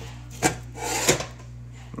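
Sliding metal lid of a Pullman loaf pan being pushed open: a sharp click about half a second in, then a short scraping rub of metal on metal.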